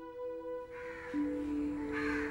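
Soft background music of held chords, with crows cawing harshly in the background from under a second in.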